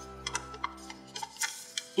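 Origami paper crinkling and crackling in the hands as its creases are pushed together into a square base: a scatter of short sharp clicks. Soft background music fades out about a second and a half in.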